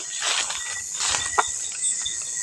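Crickets and other night insects calling in a steady high-pitched chorus, with two rustles of leafy undergrowth being brushed through in the first second and a half.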